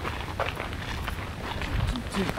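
Footsteps on a gravel path: a few irregular steps.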